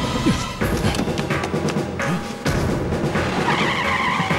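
Dramatic film score with drums over a car engine, and a tyre screech beginning about three seconds in as the car pulls away.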